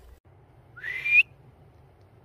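A person whistling a short rising recall whistle to call a dog back, about half a second long and ending on a higher note.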